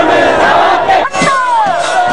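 A crowd of protesters shouting and chanting together, many loud voices overlapping, with a brief break about a second in.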